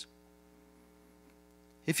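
Near silence in a pause, with a faint steady electrical mains hum: a row of evenly spaced unchanging tones. Speech resumes just before the end.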